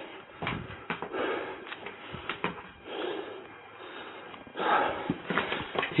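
Low rustling and handling noise of an officer's gear and shield against a body-worn camera, with scattered sharp clicks. A louder stretch of rustling comes near the end.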